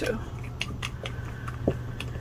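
A few light clicks and taps as a small gel polish bottle is handled and its cap unscrewed, over a faint low hum.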